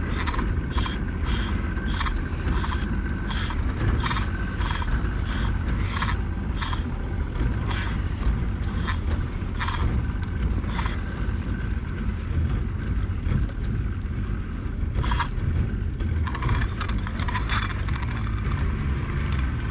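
A spinning reel clicking under load from a hooked alligator, about twice a second, then a pause of a few seconds and a quicker run of clicks near the end. A steady low rumble runs underneath.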